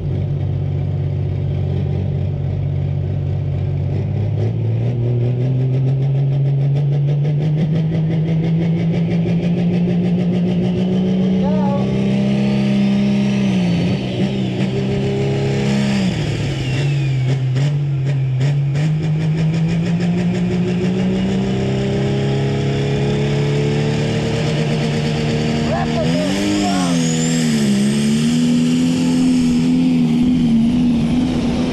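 A Prostock pulling tractor's diesel engine at full power dragging the weight sled. The revs climb steadily, sag hard around the middle of the run as the load bites, then climb again and waver near the end.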